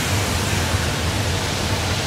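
Steady, even hiss with a low hum underneath, unchanging throughout: background noise of the recording.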